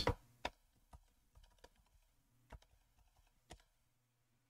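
A few faint, separate keystrokes on a computer keyboard, irregularly spaced about half a second to a second apart, as a short command is typed and entered.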